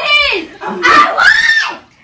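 High-pitched shrieking voices: a short squeal at the start, then a longer held squeal that rises and falls in the second half and breaks off just before the end.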